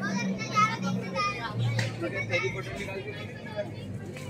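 People's voices talking over a steady low hum.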